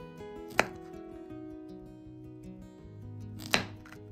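Two sharp knife chops on a cutting board, about three seconds apart, over background acoustic guitar music.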